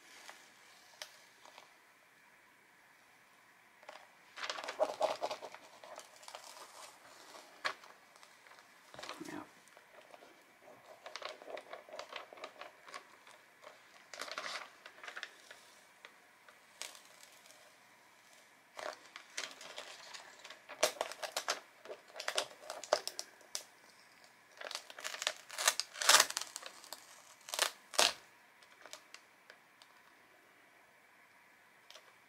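Crinkling and crackling of a cut-out plastic silhouette sheet being handled and peeled on a canvas, in scattered bursts with sharp clicks, busier in the second half.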